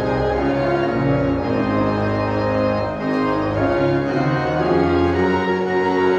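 Church organ playing slow, sustained chords as a prelude before the service.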